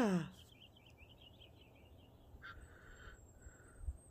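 A small bird twittering faintly: a quick run of high chirps lasting about a second and a half, followed later by a couple of short, softer calls.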